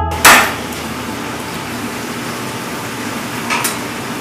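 One hard chop on a plastic cutting board just after the start, as pork rib bone is cut, then steady kitchen noise with a lighter knock about three and a half seconds in.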